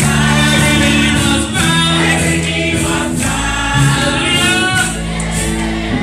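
Congregation singing a gospel song together over live band accompaniment, with steady sustained chords underneath.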